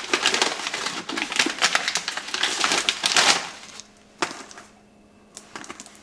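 Tissue paper rustling and crinkling as a gift is unwrapped, for about four seconds, followed by a couple of light taps.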